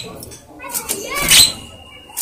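Javan myna (jalak kebo) calling: a varied, chattering run of gliding and harsh notes, building to a loud, raspy call a little past a second in.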